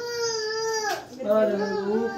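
Drawn-out voices: a high voice holds one note for about a second, then after a short gap a lower voice and a higher one are held together.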